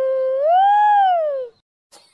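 A high-pitched cartoon character's voice holding one long wailing cry, held level, then rising and falling in pitch before cutting off abruptly near the end.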